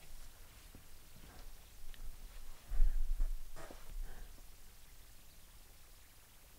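Soft handling of a tarot card being laid on a cloth-covered table: faint rustles and light taps, with a dull bump and a short rustle about three seconds in.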